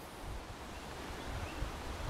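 Faint outdoor woodland ambience: a soft, even hiss with a low, uneven rumble underneath, like light wind moving over the microphone and through the trees.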